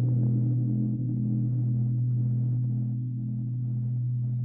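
A large struck bell ringing on after a single stroke: a deep steady hum with a slow waver in it, fading gradually.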